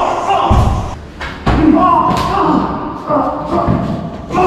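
Three heavy thuds, about half a second, a second and a half and near four seconds in, over voices in a large room.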